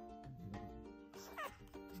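Background music with a plucked-string melody. About one and a half seconds in, a chihuahua gives one short, high whine that sweeps in pitch.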